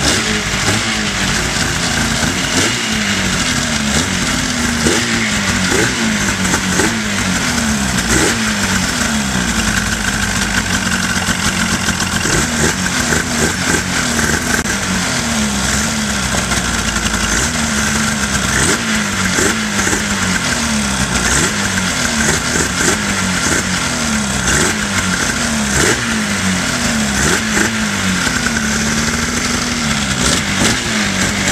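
Polaris snowmobile's twin-carburettor two-stroke engine running with its speed rising and dipping about every second or two. The fuel tank has been drained, and the engine is burning off the fuel left in its lines and carburettors.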